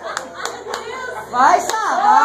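A small group clapping by hand, scattered claps mixed with excited, overlapping voices; a loud excited shout rises over them about one and a half seconds in.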